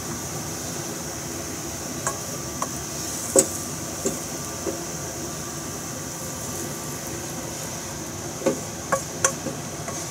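Wooden spatula knocking and scraping against a frying pan and plate as fried rice is scooped out and served, a scattering of short knocks with the loudest about three seconds in and a cluster near the end, over a steady background hiss.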